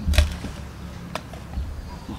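Two short clicks about a second apart, the first the louder, with a low rumble underneath, as cut spring onions are handled in a stainless steel bowl and put into a glass jar.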